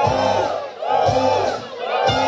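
Crowd of dancers shouting together in unison, three long calls about a second apart, each rising and falling in pitch, over the band's music.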